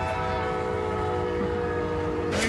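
A train's air horn sounding one long, steady chord of several notes.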